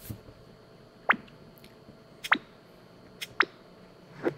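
Electronic bloop sound effects from the Kahoot quiz game: three short water-drop-like blips that drop quickly in pitch, about a second apart, each of the last two with a smaller blip just before it.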